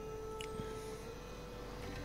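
Quiet background music of sustained held tones, the main tone shifting slightly in pitch about a second in.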